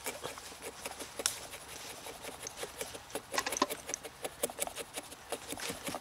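Axe blade shaving thin curls off a split stick of wood: a run of short scraping strokes with small crackles and clicks as the shavings peel away, coming faster about halfway through.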